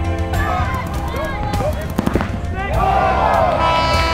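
Paintball markers firing, a scatter of sharp pops heaviest in the middle, under shouting voices and background music.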